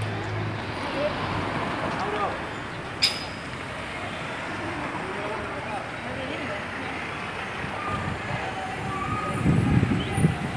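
City street traffic noise with distant voices. A sharp click comes about three seconds in, and a few low thumps come near the end.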